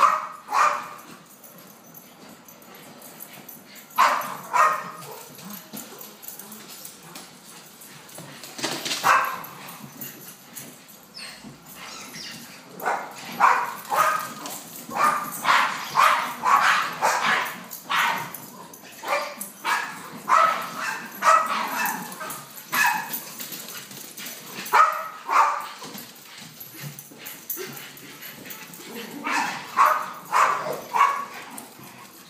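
Small dogs barking and yipping in scattered bursts while they play chase, with the barks coming thickest through the middle.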